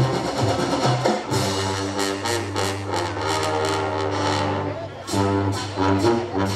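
Brass-and-percussion marching band playing: drum strokes at first, then held brass chords from about a second in, a short break near five seconds, and the brass comes in again.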